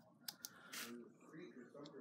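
Faint handling of a battery-operated pillar candle, with one sharp click about a quarter second in as its light is switched off, and a few softer ticks.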